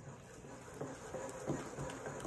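Thick chocolate cake batter being stirred with a spatula in a glass bowl: soft, irregular wet squelching and scraping strokes, a few of them louder in the second half. This is the stage where only half the milk has been mixed in, so the batter is still stiff.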